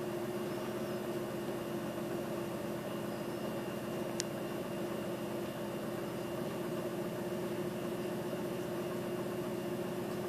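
Steady mechanical hum with a faint hiss, like a small motor or pump running, and a single sharp click about four seconds in.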